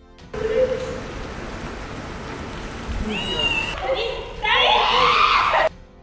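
A woman shrieking: a short high cry about three seconds in, then a longer, louder wavering scream near the end.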